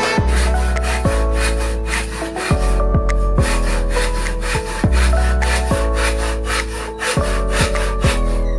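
Wood being sawn, over background music.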